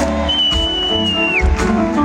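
Live band music: keyboard playing over bass and drums. A single high note is held for about a second and bends down at its end.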